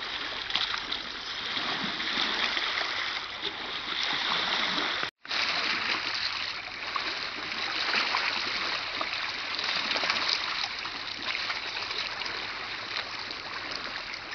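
Small lake waves lapping and splashing against boulders and a pebble shore, a steady wash of water with small splashes throughout. The sound cuts out for an instant about five seconds in.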